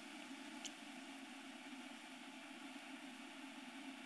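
Faint steady background hiss and hum of a quiet room (room tone), with one tiny tick about two-thirds of a second in.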